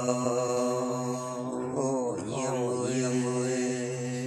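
A solo voice singing a long held note in Red Dao folk song (hát lượn), steady in pitch with a slight waver, breaking briefly and resuming about two seconds in.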